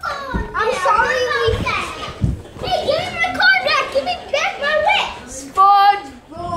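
Young children's voices shouting and chattering at play, with a few short low thumps about half a second, a second and a half and two seconds in.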